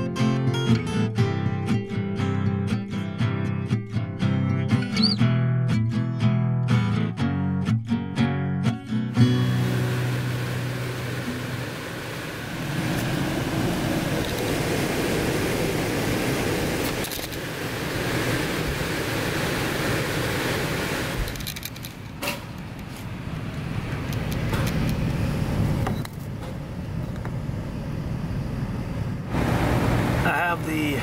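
Strummed acoustic guitar music for about the first nine seconds, then the steady rush of an air conditioning system's blower running, its level dipping and rising a few times.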